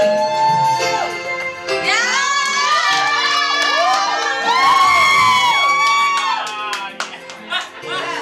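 Female vocal trio singing long held notes in close harmony, the voices gliding into and out of each note over steady lower sustained notes.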